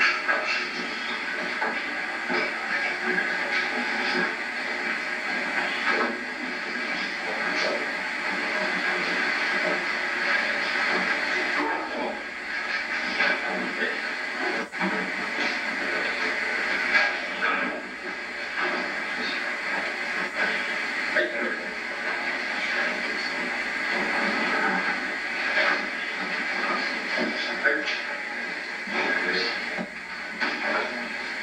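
Muffled, indistinct voices over a steady hiss, the thin, low-fidelity sound of old videotape.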